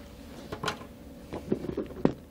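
Light knocks and clunks of things being handled on a desk: one about half a second in, then a quick cluster near the end as a bag on the desk is grabbed. A faint steady hum lies underneath.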